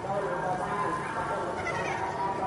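Young children's high-pitched voices, wavering and bleat-like, going on throughout.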